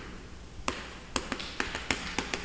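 Chalk on a chalkboard while writing: a series of sharp taps, few at first and coming quickly from about two-thirds of a second in.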